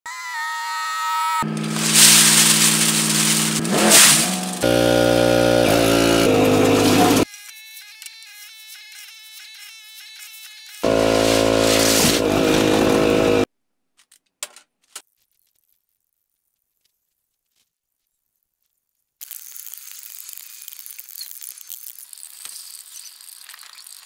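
Loud pitched sounds in several short stretches with abrupt cuts between them, then a few seconds of silence. Near the end, crushed aluminium cans rattle and clink as they are handled.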